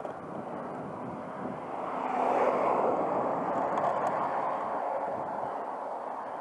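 Riding noise from a road bike on an asphalt lane, a steady rush of wind and tyre noise that swells louder about two seconds in and eases off over the next few seconds.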